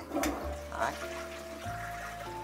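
Toilet tank flushed with its lever: water rushing through the bowl and starting to run into the tank's hand-wash spout, heard under sustained background music.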